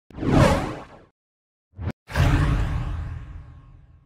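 Logo-intro sound effects: a whoosh, a short swelling swish about a second and a half later, then a sudden loud hit that dies away over about two seconds.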